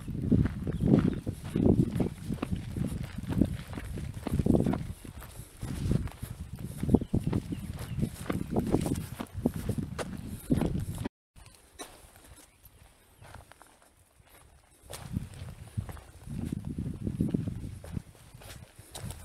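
Footsteps on a sandy, gritty hill trail, close to the microphone, about one and a half steps a second. They cut off suddenly about eleven seconds in and start again more quietly near the end.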